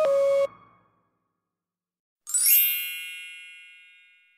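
Editing sound effects: a short two-note beep with a hiss, the second note slightly lower, then a bright shimmering chime about two seconds in that sweeps quickly upward and rings out, fading away.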